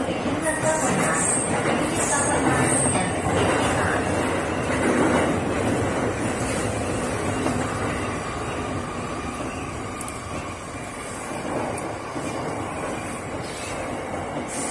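An E231-series electric commuter train running on the rails, heard from the driver's cab, with an echo effect added to the audio. There are brief high-pitched squeals in the first few seconds, and the running noise eases off a little in the second half.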